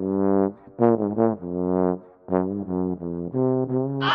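Trombone played with a plush toy banana stuffed into its bell as a mute: a short tune of separate notes, some held, some quick, with brief breaks between phrases.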